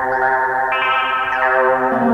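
Mutable Instruments Plaits synthesizer voice sounding a sustained, buzzy tone with many harmonics. The note changes about two-thirds of a second in and again near the end as the knobs are turned.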